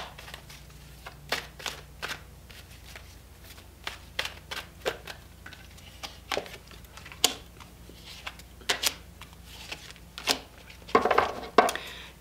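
A deck of oracle cards being shuffled by hand: irregular soft snaps and slaps of card stock, with a quicker flurry near the end.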